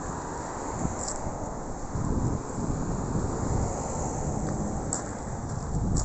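Wind buffeting the microphone outdoors: an uneven low rumble over a steady hiss.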